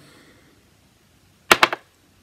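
Quiet pause, then a quick cluster of three or four sharp clicks about a second and a half in.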